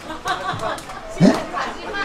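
Only speech: voices talking and chattering, a man's voice through a microphone among the audience.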